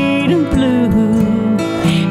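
Americana song on a steel-string acoustic guitar, heard between sung lines, with a held melody note that slides from one pitch to another.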